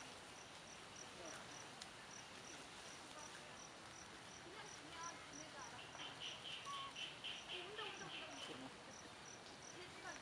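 Forest insects chirping: a faint, regular high chirp repeats about three to four times a second. A second, lower pulsing insect call joins in the middle for about three seconds.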